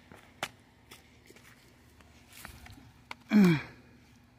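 A few light clicks and taps of handling and movement, then, a little over three seconds in, a short grunt from a man's voice that falls in pitch.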